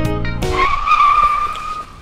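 Guitar music stops abruptly about half a second in, and a tire-screech sound effect follows: one high, steady squeal lasting about a second.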